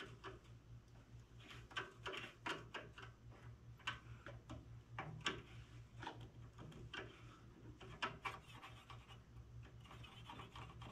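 Faint, irregular metal clicks and light scraping of a wrench and feeler gauge working on the rocker arm of a Briggs & Stratton Intek OHV single-cylinder engine as the intake valve lash is set. A steady low hum runs underneath.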